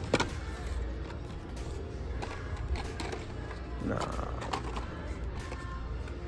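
Store background music playing faintly over a low room hum, with a few sharp clicks of plastic-and-card toy blister packs being handled on the pegs, the loudest just at the start.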